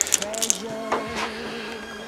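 A few light wooden clicks from a small jointed wooden bear toy as a finger flicks at it, its leg loose; after about half a second a faint steady held tone carries on underneath.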